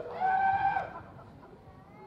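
A high, drawn-out call with overtones and an arching pitch that stops about a second in. Faint background noise follows.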